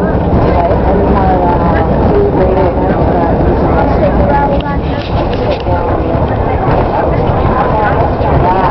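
Indistinct chatter of bus passengers over the steady low rumble of the moving bus.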